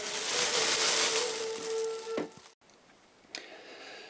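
Thin plastic bag crinkling and rustling as it is handled, with a faint steady tone underneath, for about two seconds; then the sound cuts off suddenly and gives way to quiet room tone with a single click.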